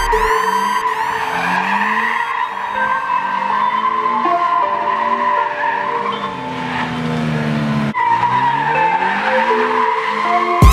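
A drifting Subaru BRZ's rear tyres squeal continuously with a wavering pitch, while the engine revs up and down underneath. The sound breaks off for a moment about eight seconds in, then resumes.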